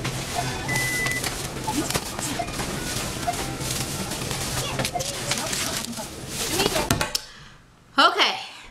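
Busy supermarket checkout ambience: background chatter and store music over a steady hum, with a short electronic beep about a second in. Near the end it drops to a quiet room.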